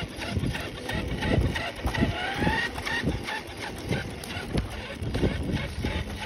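Radio-controlled monster truck driving slowly over gritty asphalt: irregular knocks and crunching from the tyres and chassis, with a brief rising motor whine about two seconds in.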